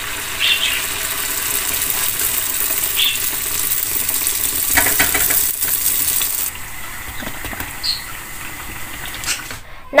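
Pa thong ko dough sticks deep-frying in hot oil in a pan: a steady crackling sizzle that thins out and softens about six and a half seconds in.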